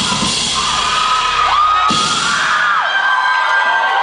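Live band music over a concert PA, with the crowd screaming and whooping. The low beat drops away about two seconds in, leaving high screams and held tones.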